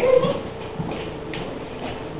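A standard poodle whining once, a short pitched cry right at the start lasting about a third of a second.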